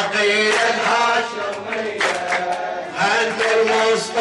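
A group of men chanting a devotional song together in unison, holding long drawn-out notes, with hand claps among the voices.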